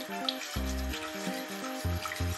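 Soy-sauce, sake and mirin seasoning liquid simmering and sizzling in a stainless pressure-cooker pot while a wooden utensil stirs it; the liquid is being heated to boil off its alcohol. Background music plays underneath.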